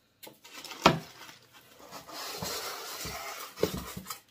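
Handling the packaging of a boxed glass canister: a sharp knock about a second in, then rustling of plastic wrapping and packing inserts as the jar is lifted out of its cardboard box, with a couple more knocks near the end.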